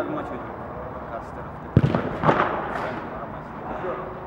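Two sharp thumps about half a second apart, near the middle, over steady background noise.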